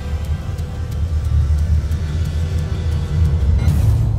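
Dark sci-fi soundtrack music: a deep rumbling low drone with faint ticks about three a second above it, and a brief hissing swell near the end.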